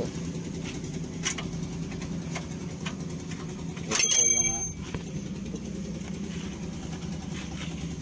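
A vehicle engine idling steadily with a low hum. About four seconds in, a short loud voice-like call cuts across it.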